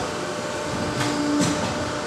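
Roll-forming machine for tile-profile roofing sheet running with a steady mechanical noise, a brief low hum in the middle and two sharp metallic clicks about a second in.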